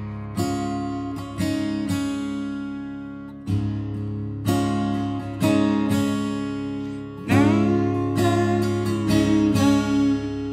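Gibson acoustic guitar fingerpicked in double drop D tuning lowered a half step. It plays a slow riff of about a dozen single plucked notes over ringing low strings on a D chord, with the pinky adding the fourth.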